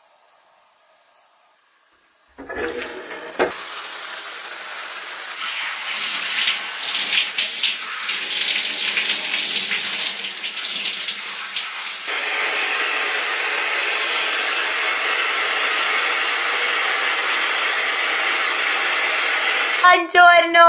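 Near silence at first, then a shower starts running about two seconds in: a steady spray of water falling in a tiled shower cubicle, with a knock just after it starts and a slight change in the spray's sound about halfway through.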